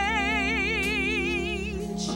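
A woman's solo gospel voice holds one long note with wide vibrato over sustained accompaniment chords; the note ends and the chord changes near the end.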